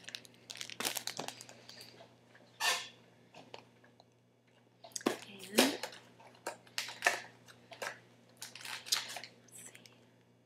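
Clear plastic bags crinkling and rustling in short, irregular bursts as small plastic miniature pieces and packets are handled and unpacked.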